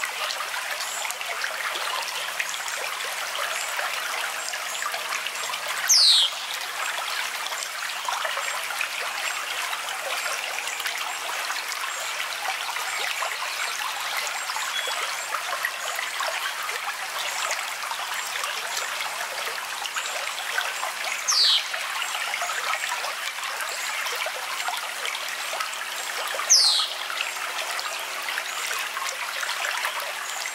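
Steady trickling of running water, like a small stream. Three times a short high whistle falls sharply in pitch over it, the loudest sounds in the stretch.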